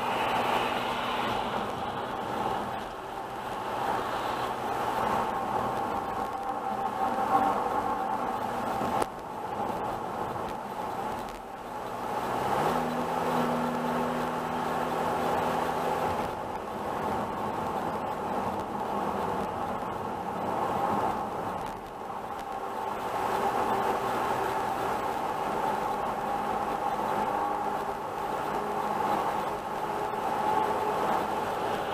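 Steady road and engine noise inside a moving car's cabin on an asphalt highway: tyre rumble with a low engine hum that steps up in pitch about twelve seconds in. There is a single sharp click about nine seconds in.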